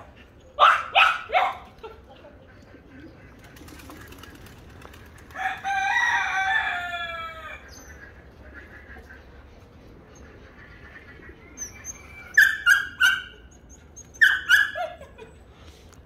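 A rooster crows once, a long call of about two seconds starting about five seconds in. Short bursts of sharp animal calls come near the start and again near the end.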